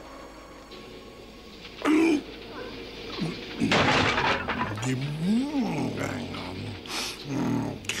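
Wordless cartoon voice sounds: short grunts and one drawn-out vocal sound that rises and then falls in pitch, with a sharp noisy burst about four seconds in.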